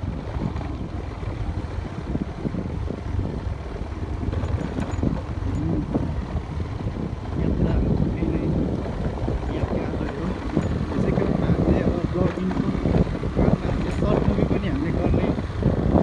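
Motorcycle engine running at low speed over a rough grassy trail, with wind buffeting the microphone.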